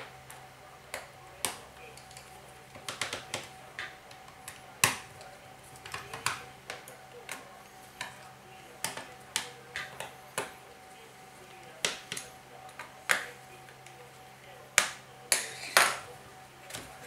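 Small screwdriver tightening the screws of a ThinkPad L480 laptop's plastic bottom cover: irregular sharp clicks and taps of the tool and fingers on the screws and the plastic shell, with a cluster of louder knocks near the end as the laptop is handled. A faint steady hum runs underneath.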